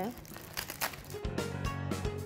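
Aluminium foil around a portion of meat being unwrapped, crinkling in short irregular crackles. Background music comes in a little past halfway.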